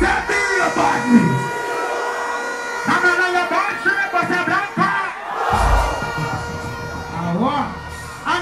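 Live dancehall performance through a loud PA: the bass-heavy beat drops out at the start, and a man's voice chants over the microphone in short phrases above a steady held musical tone, with crowd noise and a short bass hit about two-thirds of the way through.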